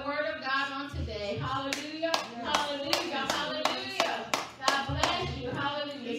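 Hands clapping in a steady beat, about three claps a second, starting about two seconds in and stopping about a second before the end, along with a woman's singing voice.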